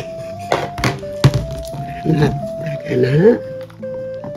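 Three short knocks of objects handled on a wooden table in the first second and a half, the last the loudest, over background music with a simple stepped melody.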